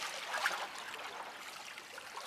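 Faint, steady wash of small sea waves lapping against the rocks of a seawall.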